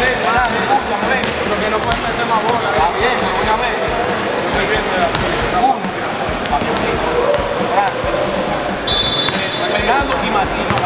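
Basketball game sounds in a gym: many short sneaker squeaks on the court, a ball bouncing, and a steady bed of voices.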